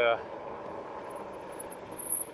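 Steady riding noise from an electric fat-tire bike under way. A thin, high-pitched whine comes in about a second in, and the noise grows louder and uneven toward the end.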